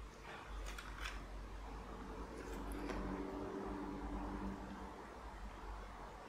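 Quiet handling of paper and a glue stick: a few faint light clicks and rustles in the first second, over a steady low hum.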